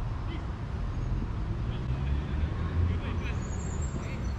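Players shouting to each other across a football pitch, faint and distant, with a few short calls near the end, over a steady low rumble.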